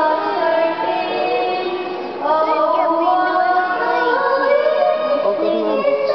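A child singing in a large church, held sung notes ringing in the hall; a new, louder phrase begins about two seconds in.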